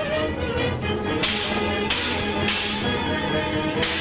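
Background film music with four sharp cracking hits over it, spaced about half a second to a second apart: fight-scene sound effects.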